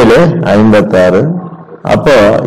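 A man's voice speaking in a steady, explaining manner, with no other sound heard.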